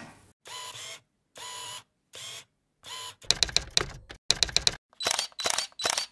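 Mechanical clicking sound effects for an animated logo: a few short separate bursts, then a rapid clatter of clicks about three seconds in, then evenly spaced sharp clicks about two or three a second, each with a thin high ring.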